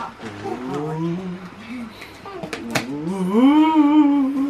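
Wordless drawn-out voices, low and wavering, ending in a long rising-then-held "oooh" in the last second. Two sharp snaps about two and a half seconds in as the cardboard box is opened.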